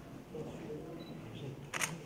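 A single camera shutter click near the end, over low conversation in the room.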